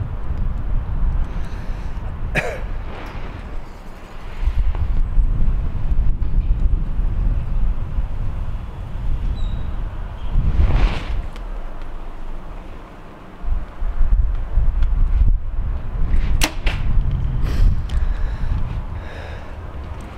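A compound bow is shot late on: a sharp snap of the string and limbs at release, followed by a few short sharp knocks as the arrow strikes the target. Low gusting wind rumbles on the microphone throughout.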